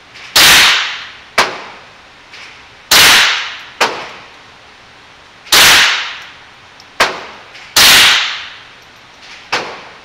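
Glock 17 9mm pistol fired four times at a slow, steady pace, a shot about every two and a half seconds, each one echoing along the enclosed range. A sharper, quieter crack follows most of the shots.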